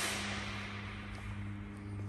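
A steady low hum, with a hiss that fades away during the first second.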